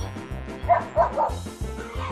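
Background music with a steady beat, over which toy poodles give three short, high yips a little past the middle.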